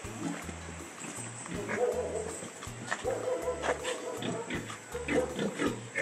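Domestic animal calls in a farmyard, heard around two seconds in and again through the second half, over quiet background music with a repeating bass line.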